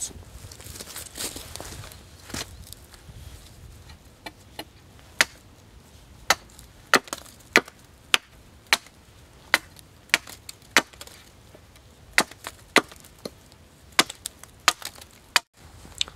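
A hatchet chopping the end of a green wooden stick to a point on a chopping block: a steady run of sharp wooden chops, a little under two a second, with lighter strikes in the first few seconds.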